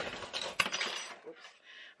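A few small clicks or clinks, the sharpest about half a second in, then it goes quiet.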